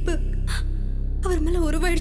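A woman crying without words, her voice wavering in short sobs, over steady low background music.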